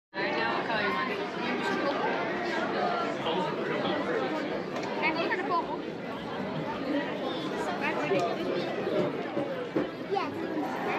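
Indistinct chatter: several people talking over one another, with no clear words.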